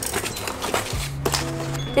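Background music with a steady low drone and held notes under scattered clicks and rustles of a small cardboard box being handled and opened.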